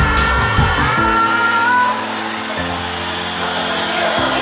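Pop music from a concert recording playing in the room: a melodic line over held chords, a little quieter from about two seconds in.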